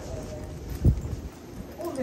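Footsteps of people walking on a hard concourse floor, with one dull, low thump a little under a second in.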